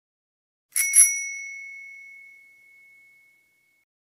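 A bicycle-type bell struck twice in quick succession about a second in; its single clear tone rings on and fades away over about three seconds.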